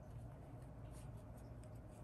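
Faint rustle and scratch of yarn being worked with a metal crochet hook, over a low steady hum.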